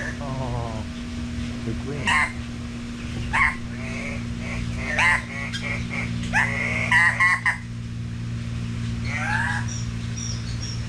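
Bird calls: a series of loud, downward-sweeping calls every second or two, with a quick run of them about seven seconds in, over a steady low hum.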